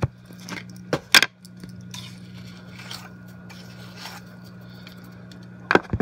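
A camera being set down with a knock, then handling noises: sharp knocks and clicks, the loudest about a second in and two more near the end, with light scraping and rustling between, over a steady low hum.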